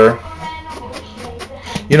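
Soft background guitar music, with a word of speech at each edge.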